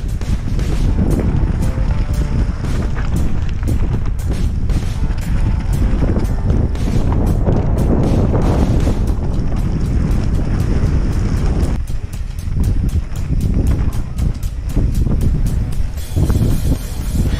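Wind rushing over a helmet-mounted camera's microphone at speed. Through it comes the continuous rattle and clatter of a mountain bike descending a rough, rocky trail, with many short knocks from tyres and suspension striking rocks.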